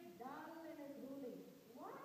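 A child's voice speaking faintly in long, drawn-out syllables that glide up and down in pitch, with a short pause near the end.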